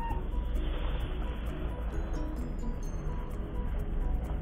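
Music from a YouTube video playing through a Nexus 5X phone's earpiece instead of its loudspeaker: the phone is wrongly stuck in call mode.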